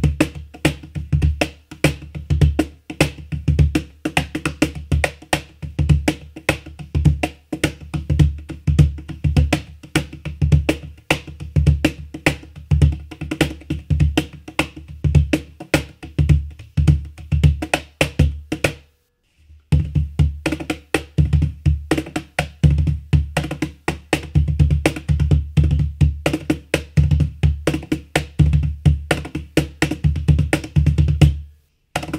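Kopf cajon with a walnut body and Karelian birch burl front plate, played by hand in a steady groove: deep bass tones from the centre of the plate mixed with crisp snare tones, its internal snare system buzzing on the hits. The playing stops for about a second partway through, then picks up again.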